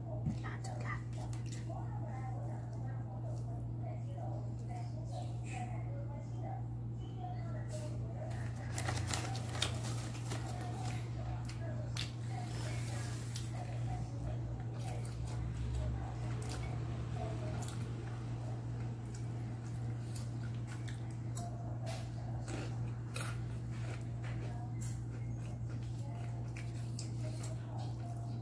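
Eating by hand: chewing and scattered small clicks as rice is picked up with the fingers, over a steady low hum.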